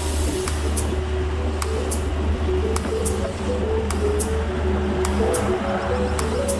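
Upbeat electronic background music, a simple stepping melody over a beat of sharp ticks, laid over the steady low rumble of a car driving on a highway.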